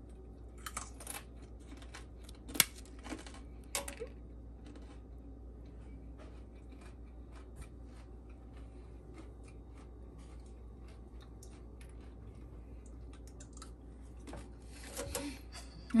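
Crisp fried banana chips crackling and snapping as they are handled and broken: a few sharp snaps in the first four seconds, the loudest about two and a half seconds in, then scattered faint clicks over a low steady hum, and a denser crunching near the end.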